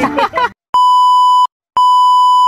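Television test-pattern tone sound effect: a steady, high electronic beep held for under a second, cutting off cleanly, then sounding again after a brief silence.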